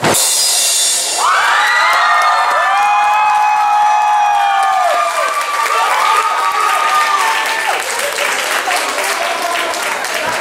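A final cymbal crash rings out on a rock drum kit at the end of a drum solo. The audience then cheers, several voices holding long overlapping whoops that rise, hold and fall away over the next several seconds.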